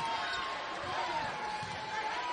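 Basketball dribbled on a hardwood court, over arena crowd noise with voices calling out.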